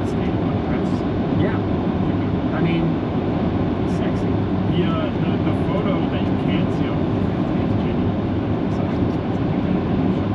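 Steady road and engine rumble inside a moving car's cabin, with faint, broken voices from a conversation playing in the background.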